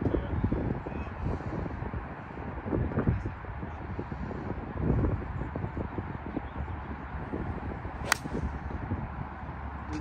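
Wind noise on the microphone, then a single sharp crack late on as a golf driver strikes the ball off the tee.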